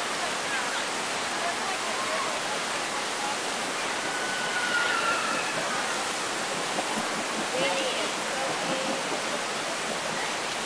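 Steady rushing of white water through a raft ride's rapids channel. Faint distant voices rise above it now and then, around the middle and again later on.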